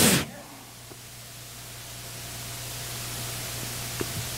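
A man's voice trails off at the very start, then a steady hiss with a low hum, growing slowly louder.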